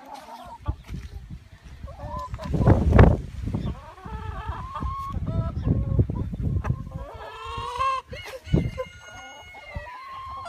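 A flock of chickens clucking, with a rooster crowing in long drawn-out calls over the last three seconds. A loud blast of microphone noise comes about three seconds in.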